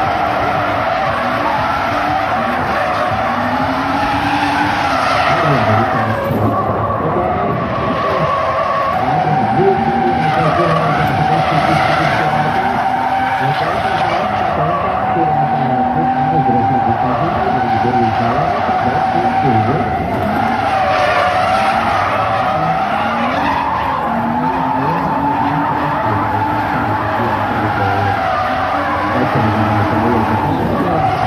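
Drift car engines, hers a BMW E36, revving up and down on and off the throttle, with long continuous tyre squeal as two cars slide in tandem.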